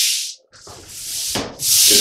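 Long-handled scrub brush scrubbing the grout lines of a tile floor in rhythmic back-and-forth strokes. The strokes fade and stop briefly under half a second in, come back quieter, and are at full strength again near the end.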